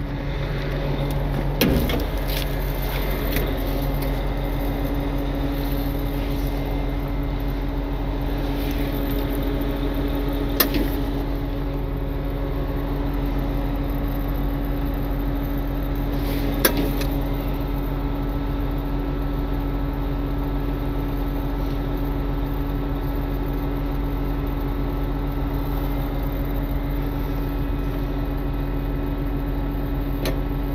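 A heavy wrecker's diesel engine runs steadily with a hum while its hydraulic controls are worked. A higher hum joins about two seconds in. Three sharp metallic knocks come at intervals.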